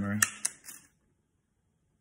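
A spoken word trailing off over a few sharp metallic clicks as a tape measure is handled against a knife handle, then dead silence for the last second.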